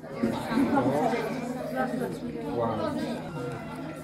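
Group of schoolchildren chattering at once, many overlapping voices with no single clear speaker.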